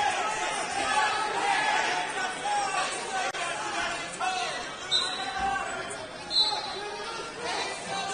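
Many voices chattering and calling out across a large gym during a wrestling match, with two short high squeaks, the first about five seconds in and the louder one about a second and a half later.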